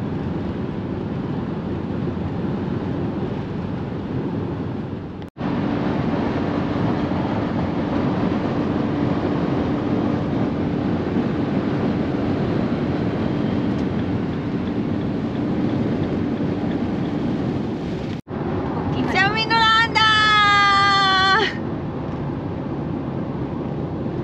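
Steady road and engine noise inside a camper van's cab cruising at motorway speed. It cuts out briefly twice. Near the end a drawn-out voice rises over it for about two seconds, its pitch sliding down.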